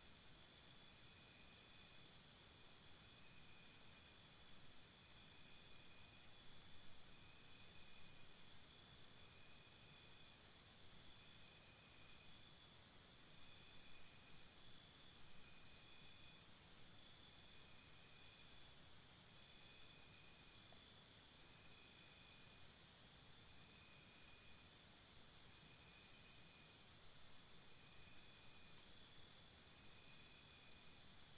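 Faint, high-pitched chirping of insects. It comes in rapid pulsed trains about three seconds long, one roughly every seven seconds, over a steadier, fainter high trill.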